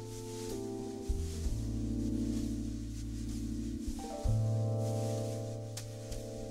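Live jazz-fusion band playing a slow, soft passage: sustained electric keyboard chords over long-held bass notes, with a faint cymbal shimmer above. The chords change about half a second in and again about four seconds in.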